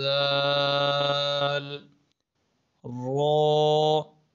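A man's voice reciting Arabic letters in long, drawn-out chanted tones. One held note runs to about two seconds in. After a pause of about a second, a second held note starts with a rising pitch.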